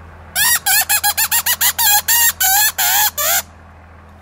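Mouth-blown fox call (rävlock) imitating a bird's distress cry: a rapid run of about a dozen short, high, wavering squeals lasting about three seconds. The sound mimics an injured bird, easy prey, to lure a fox in.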